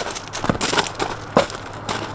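Footsteps crunching on gravel, several irregular steps.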